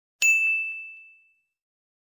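A single bell 'ding' sound effect for a subscribe-and-notification-bell animation: one sharp strike that rings out as a bright tone and fades away within about a second.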